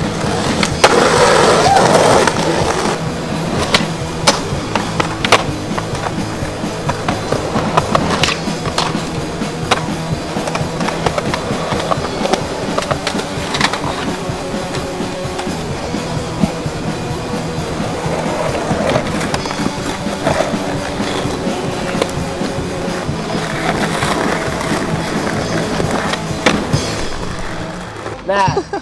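Skateboard wheels rolling on concrete and asphalt, broken by sharp clacks and knocks of the board popping, hitting ledges and landing. Music plays underneath.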